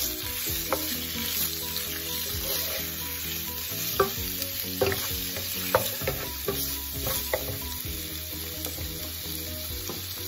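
Shrimp and minced ginger frying in hot oil in a skillet on high heat, a steady sizzle. A wooden spoon stirs them, knocking and scraping against the pan every second or so.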